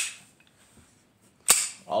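Walther PK380 pistol's slide being racked, with its magazine out, as a safety check to clear the chamber: a sharp metal click at the start and a louder clack about one and a half seconds in.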